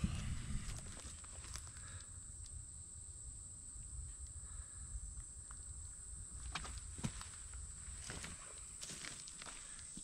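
Quiet woodland ambience: a steady high-pitched insect drone with a low rumble underneath. A few soft clicks and rustles of movement on leaf litter come in the second half.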